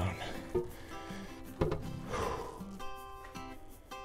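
Background music over a heavy cast-iron John Deere wheel weight being set down on a digital platform scale. There is a light knock about half a second in, then a louder clunk as the weight lands, about a second and a half in.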